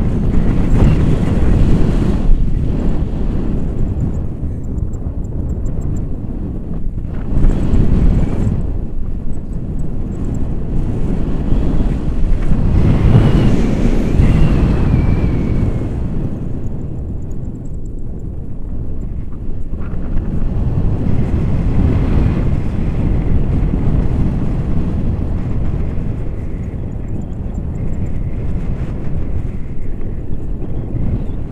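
Wind rushing over the camera microphone as the tandem paraglider flies, a dull rumble that swells in gusts about a second in, around eight seconds and again around thirteen to fifteen seconds.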